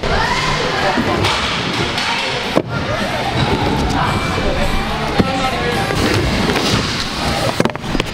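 Pro scooter wheels rolling over wooden skatepark ramps, with sharp thuds about two and a half seconds in and again near the end, over background music.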